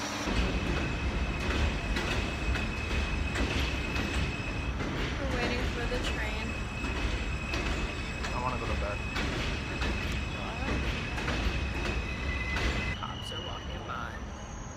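Subway train riding along: a steady low rumble with repeated clicks from the wheels on the rails and a steady high-pitched whine. Near the end the rumble eases and the whine changes pitch.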